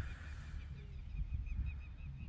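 A bird calling a rapid run of short, evenly repeated high notes, about five or six a second, over a low steady rumble.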